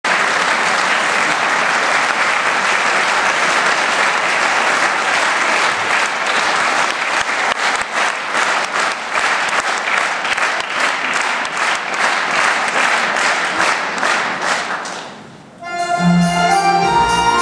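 Concert-hall audience applauding. In the second half the clapping turns rhythmic and together, then dies away about a second before the end.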